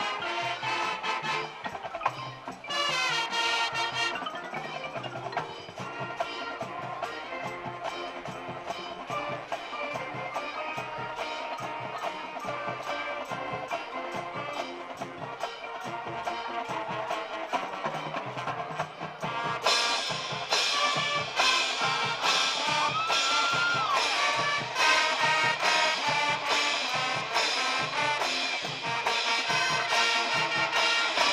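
High school marching band playing its halftime field show: brass over drums and mallet percussion with a steady beat, swelling louder about two-thirds of the way through.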